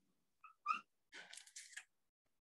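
Dry-erase marker writing on a whiteboard: two short squeaks about half a second in, then a scratchy stroke of nearly a second near the end.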